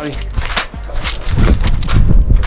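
A bunch of metal keys gripped in a fist jingles with sharp clicks as the hand moves through punching motions. A loud low rumble takes over in the second half.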